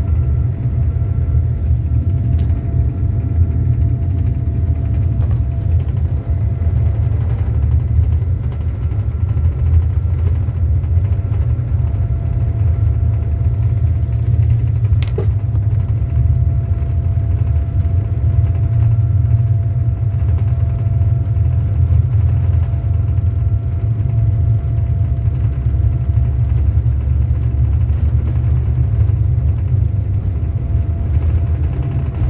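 Airliner cabin noise while the plane taxis on the ground: a steady low rumble from the jet engines and wheels, with a faint steady engine whine above it.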